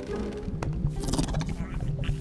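Cartoon background music with low grunting vocal sounds from the animated polar bear, and a breathy burst about a second in.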